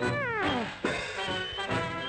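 A cartoon sound effect: a pitched tone sliding steadily downward for under a second. Then a sharp hit, and brass band music carries on.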